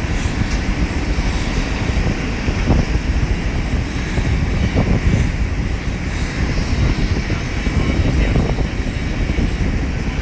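Loud, steady aircraft engine noise on an airport apron, with gusting wind buffeting the microphone.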